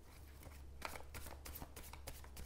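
A deck of tarot cards being shuffled by hand: a faint run of quick card flicks starting a little under a second in.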